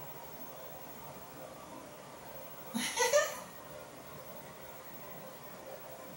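A woman's short laugh about three seconds in, rising in pitch, over faint steady room noise.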